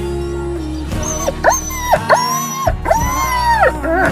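Large dog whining in a car: a run of three or four high, rising-and-falling whines starting about a second in, the last one the longest, over background music.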